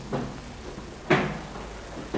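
A short knock or bump about a second in, with a fainter one at the start.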